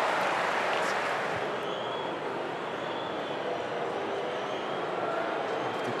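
Steady hubbub of a large football stadium crowd, easing a little in the middle and building slightly again toward the end.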